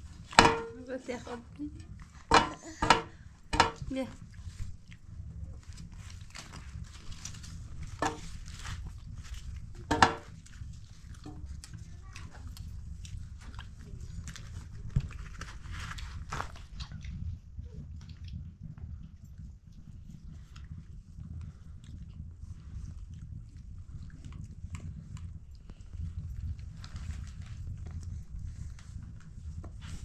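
A few short bursts of voice in the first four seconds and again near eight and ten seconds, over a steady low hum.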